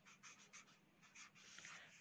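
Faint scratching of a felt-tip marker writing on paper: a quick series of short strokes as a word is written.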